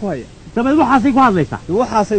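Speech: a voice talking with wide swings in pitch, with two brief pauses.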